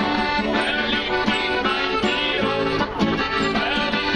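Live folk duo: a piano accordion and an acoustic guitar playing a tune with a steady, even beat, with a man singing over them.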